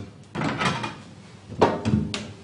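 A perforated dishwasher scrap tray knocking and scraping against the stainless steel wash tank as it is lifted out: a short clatter about a quarter second in, and a louder one near the end.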